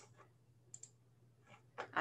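A few faint computer-mouse clicks, the first the sharpest, as slides are advanced, over a faint low hum.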